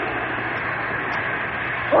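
Radio sound effect of an oil-well gusher blowing out: a steady rushing hiss.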